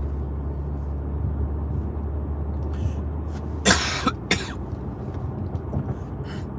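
A man coughs twice, about two thirds of the way through: one strong cough followed by a smaller one. Under it runs the steady low rumble of the car's cabin.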